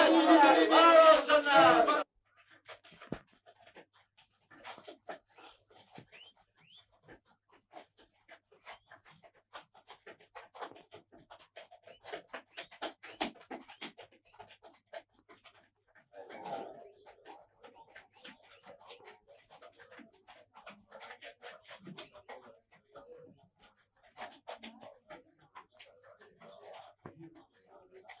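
A crowd shouting 'Yaşasın!' cuts off about two seconds in. After that come the faint, irregular clops of horses' hooves on the ground, with a brief breathy sound partway through.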